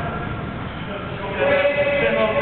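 Echoing game noise of an indoor football match on a sports-hall floor, with a louder held high-pitched tone coming in about a second and a half in.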